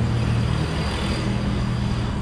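Steady low engine hum with a broad rushing noise, as of road traffic close by.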